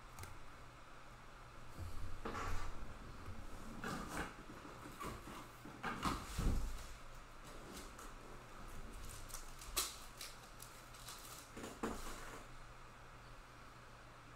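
Trading card and plastic card holders being handled on a table: scattered rustles, scrapes and light knocks for about ten seconds, the loudest near the middle, with a couple of sharp clicks near the end.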